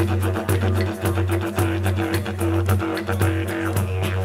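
Instrumental music: a low steady drone under a quick rhythmic pulse, with short repeated higher notes riding over it.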